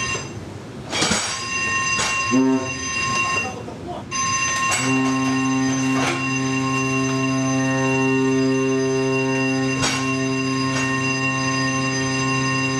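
Ship's general alarm sounding for a muster drill: electric alarm bells ringing steadily with brief breaks, a short horn blast about two and a half seconds in, then one long steady blast on the ship's horn from about five seconds in.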